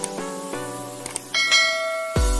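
Background music of plucked notes, with two faint mouse-click sound effects and then a bright, high bell chime about a second and a half in, the sound effects of a subscribe-button and notification-bell animation.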